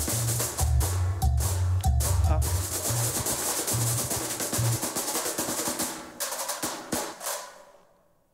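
Recorded samba bateria (batucada) percussion played back through loudspeakers. The deep drum beats drop out about halfway through, and the remaining percussion thins and dies away near the end as instruments are switched off in the app.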